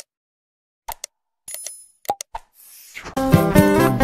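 Subscribe-button animation sound effects: a few short clicks and a brief bell ding, then a short hiss. Background music with plucked guitar comes in about three seconds in.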